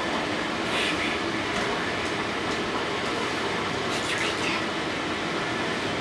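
Steady rushing noise, like a fan or air blower running, with a few faint brief scuffs.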